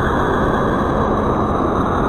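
Steady, deep rushing roar of a meteor sound effect, the noise of a rock burning through the atmosphere.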